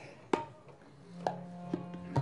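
Sparse tabla strokes, three sharp hits that ring briefly, in a pause between sung lines. A low note is held steadily from about halfway through.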